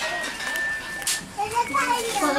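Children's voices and chatter, faint at first, with a clearer voice coming in past the middle.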